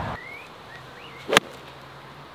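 Pitching wedge striking a golf ball cleanly: one sharp, short click about one and a half seconds in.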